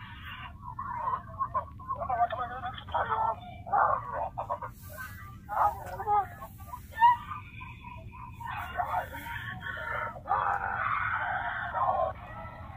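Cartoon voices playing through the small speaker of a handheld screen, thin and without clear words, with a few short loud peaks over a steady low hum.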